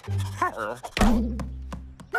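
Cartoon soundtrack: short wavering character vocalizations, then a sharp thunk about a second in, over music with low held notes.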